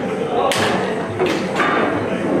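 Rosengart foosball table in fast play: the ball is struck by the plastic men and knocks off the table, giving a few sharp knocks, one about half a second in and two close together past the middle.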